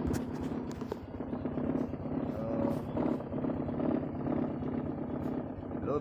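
Honda Wave single-cylinder four-stroke motorcycle engine idling steadily with a rapid low pulse.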